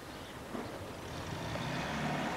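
Low rumble of a motor vehicle engine, growing a little louder in the second half.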